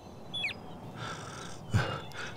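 Quiet outdoor background with a single short falling bird chirp about half a second in, and a brief low vocal sound, like a breath or a murmur, near the end.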